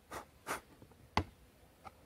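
Hands handling a small plastic bonsai pot and its soil and moss: two short scratchy scrapes, then one sharp click a little over a second in and a faint tick near the end.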